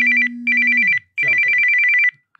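Phone ringing for an incoming call: an electronic ring of two high tones alternating rapidly, about a dozen times a second, in three bursts with short gaps between them. A low steady tone sounds under the first half and fades out about a second in.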